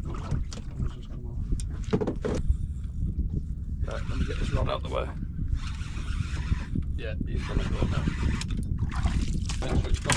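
Wind rumbling on the microphone aboard a small open boat, with muffled voices at times in the second half.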